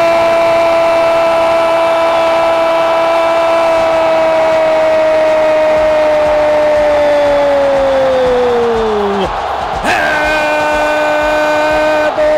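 A Brazilian radio football narrator's long, held 'gol' cry: one sustained note that slides down in pitch and breaks off about nine seconds in. About a second later another held note starts and runs on.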